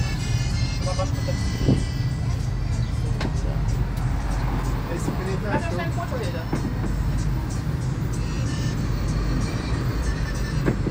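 Dotto road tourist train running along a street, a steady low rumble of the tractor unit and tyres heard from inside an open passenger carriage.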